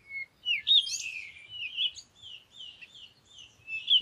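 A songbird chirping: a quick string of short, high, down-slurred notes, loudest about a second in.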